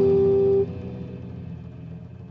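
The final held chord of an electric-guitar instrumental, guitars and bass ringing together. It cuts off abruptly about half a second in, leaving a low hum that fades away.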